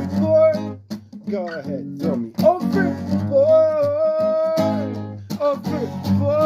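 Acoustic guitar strummed in a steady rhythm, with a voice singing over it that holds one long, wavering note through the middle.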